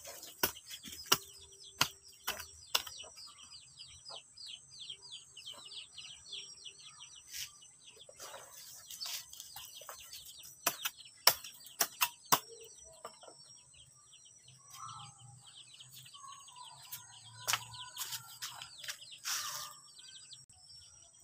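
Small birds chirping in rapid runs of short, high, falling notes over a steady high insect whine, with scattered sharp clicks and taps throughout.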